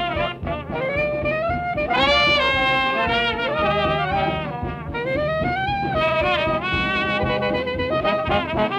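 Traditional New Orleans jazz band playing a march on a 1949 recording, with trumpet and trombone carrying the melody and reed lines weaving around them.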